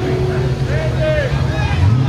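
Pickup truck's engine running hard as it ploughs through a deep mud pit, a steady low drone, with voices calling out over it.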